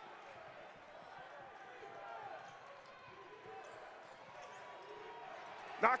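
Basketball being dribbled on a hardwood gym floor under a steady, low murmur of an arena crowd.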